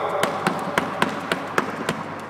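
Running shoes striking a wooden sports-hall floor during a skipping drill: a quick, even run of footfalls, about three to four a second.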